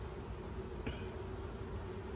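Honeybees buzzing around an open hive, a steady hum, with a faint click about a second in.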